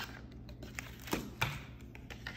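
Quiet handling of cardboard packaging: a cardboard insert is lifted and slid out of its box, with two light knocks a little past a second in.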